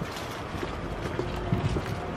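Footsteps of people walking on a paved city sidewalk: irregular low thuds over a steady hum of street noise.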